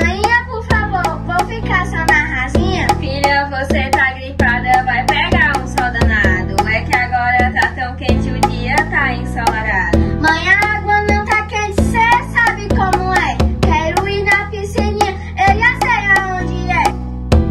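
Song: girls singing in Portuguese over a steady beat of percussion and plucked strings.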